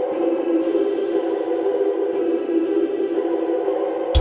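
Music intro: a steady held chord of droning tones with no drums or beat.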